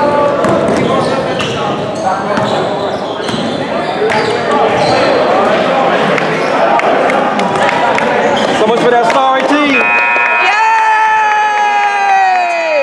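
A basketball dribbling on a gym's hardwood floor, with voices echoing around the hall. About ten seconds in, the scoreboard horn sounds, a steady multi-tone blare, as the game clock runs out.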